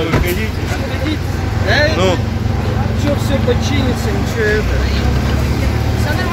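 Street ambience: a steady low rumble of vehicles with several people talking indistinctly in the background.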